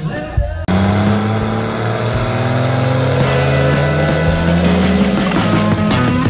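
Cummins 6.7-litre turbo-diesel in a swapped Plymouth 'Cuda held at high revs through a burnout, starting suddenly about a second in, its pitch climbing slowly, with a thin high whistle rising toward the end.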